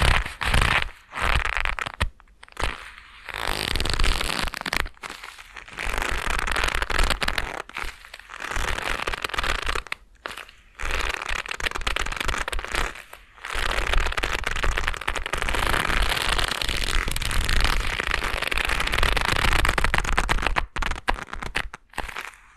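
Leather gloves rubbed and squeezed right at a binaural microphone, creaking and crackling in long stretches with short pauses between, stopping suddenly at the end.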